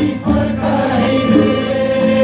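A large crowd singing a Nepali song together in unison, with live instruments accompanying.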